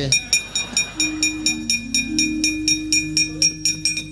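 Rapid, even metallic clanking of a wayang kulit dalang's keprak, the bronze plates hung on the puppet chest and struck in rhythm, about five strokes a second, with a few held low notes underneath.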